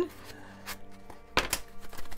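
Handmade EVA-foam prop padlock clicking as the key turns its foam cam to lock: one sharp click about one and a half seconds in, with a fainter tick before it.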